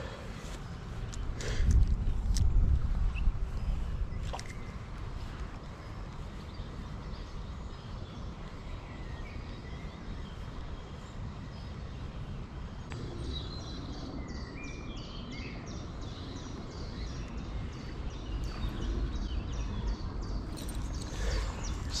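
Riverside ambience: a low rumble of wind on the microphone, strongest a couple of seconds in, with faint birdsong and a few light clicks of rod and reel handling.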